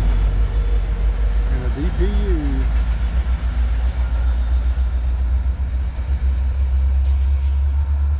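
Low, steady rumble of a departing Norfolk Southern freight train, with its locomotives' diesel engines heard from behind as it pulls away. A brief rising-and-falling call comes about two seconds in.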